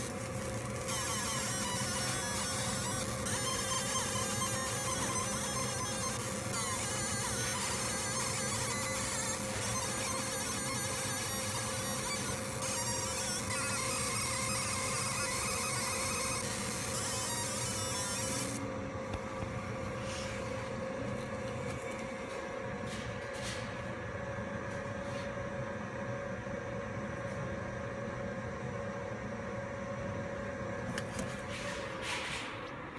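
Fiber laser marking machine engraving a stainless steel tag plate: a steady high-pitched hiss over a constant hum. The hiss stops about two-thirds of the way in, when the marking ends, leaving only the machine's hum and a few clicks.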